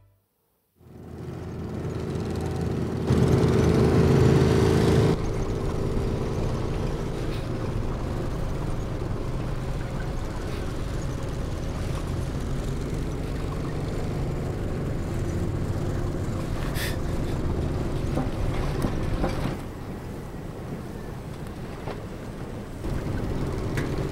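A motor vehicle's engine running steadily with a low rumble. About three seconds in it grows louder for two seconds, then settles; it drops slightly near the end.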